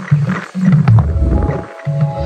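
Percussion ensemble music: a loud, deep low rumble with heavy bass hits, breaking off briefly near the end, with held keyboard tones coming in about halfway through.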